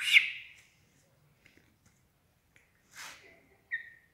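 A chicken squawking while held by hand for eye treatment: a loud squawk at the start, a rougher cry about three seconds in, and a short high call just before the end.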